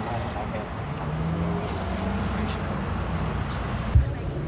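Outdoor ambience of a low, steady vehicle and traffic rumble with faint, indistinct voices in the background, ending in a single short low thump.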